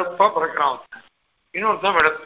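Speech only: a man lecturing, with a short pause a little under a second in.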